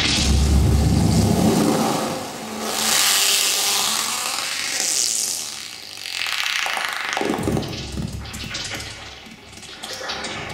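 Granular synthesizer (ag.granular.suite in Max/MSP, run through reverb, bitcrusher, delay and filters) putting out shifting noise textures as its presets are mixed by touch. A deep rumbling wash for about the first two seconds gives way to a bright hissing swell in the middle, then to thinner, crackling grains near the end.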